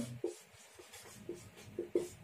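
Marker pen writing on a whiteboard: a series of short, faint strokes as a word is written out letter by letter.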